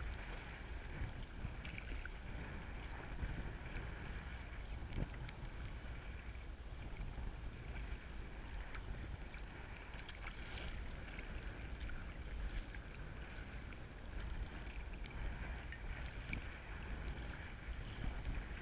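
Wind rumbling on the microphone over choppy sea water lapping against a sea kayak's hull, with scattered small splashes.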